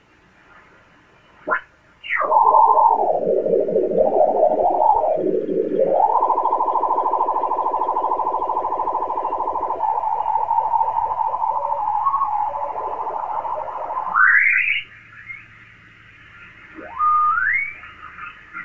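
Icom IC-7851 transceiver's receiver audio while its dial is tuned across the 20-metre sideband band: off-tune single-sideband signals whistle, warble and slide in pitch, then a steady buzzy tone holds for several seconds and ends in a rising sweep. The sound is cut off sharply above about 3 kHz by the receiver's filter.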